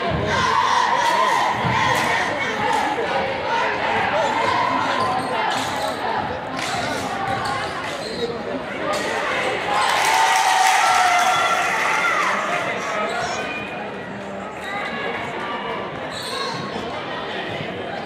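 A basketball bouncing on a hardwood gym floor during play, with scattered knocks over the voices and calls of players and spectators in a large gymnasium.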